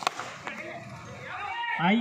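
One sharp crack of a cricket bat striking a tennis ball, then a commentator's voice over the loudspeaker.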